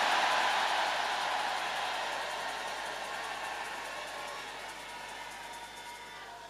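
A large congregation cheering, shouting and clapping together. It is loudest at the start and fades away gradually over several seconds.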